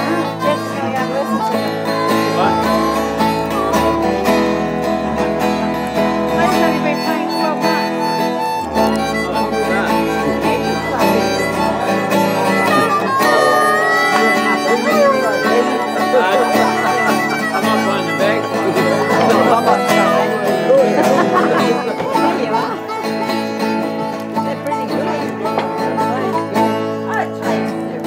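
Acoustic guitar strummed with a harmonica (blues harp) playing a blues together; the harmonica's notes bend up and down in pitch over the chords.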